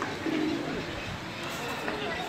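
Domestic ducks calling with short, low-pitched calls.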